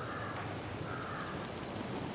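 A crow cawing faintly in the background, two short calls, the second about a second in.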